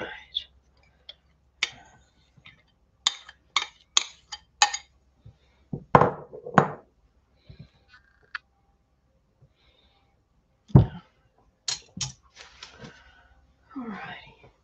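Spatula knocking and scraping against a glass mixing bowl as soft boiled potatoes are tossed through a creamy dressing: scattered clicks and knocks with quiet gaps, and a few heavier thumps midway and again later.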